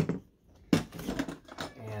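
Snap latches on an Apache 4800 hard plastic case being flipped open: two sharp clicks, the second about three quarters of a second after the first, then handling noise as the lid is raised.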